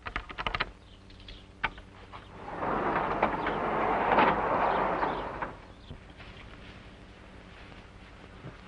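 Sharp clicks and rattles at a moving van's rear door, then about three seconds of scraping noise that swells and fades.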